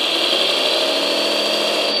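Electric drive motor and gearbox of an RC articulated dump truck running with its wheels spinning freely off the ground, in low gear without the differential lock. It makes a steady high whine that creeps up slightly in pitch and starts to fall away at the very end.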